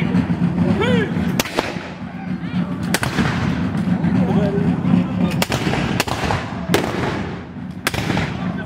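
Black-powder muskets firing a ragged series of about six shots, unevenly spaced, each with a short echo.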